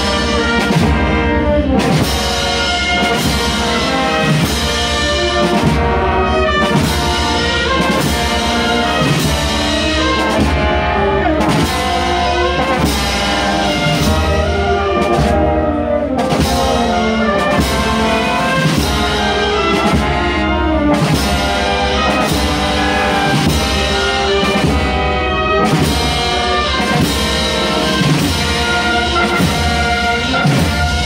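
A municipal wind band playing a processional march, with trumpets and trombones leading over a steady drum beat.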